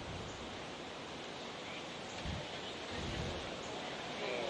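Steady outdoor background hiss, broken by a couple of brief low rumbles of wind on the microphone a little past halfway.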